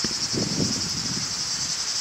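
Insects chirring steadily in a high-pitched chorus, without a break.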